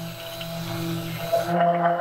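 Handheld stick blender running in liquid soap batter: a steady electric motor hum, with a brief change in the sound about one and a half seconds in.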